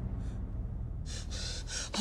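A person gasping: a sharp breathy intake about a second in, over a low steady hum.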